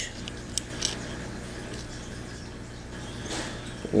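A few light clicks, mostly in the first second, as the ejector and small steel parts are fitted into a Ruger 10/22 trigger housing by hand. A steady low hum runs under them.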